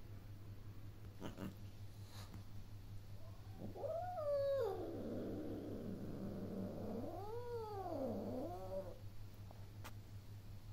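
Domestic cat yowling. Its first long drawn-out call comes a few seconds in, rising and then falling away, and runs into a rough, growly stretch. Later an arching call rises and falls, followed by a shorter one.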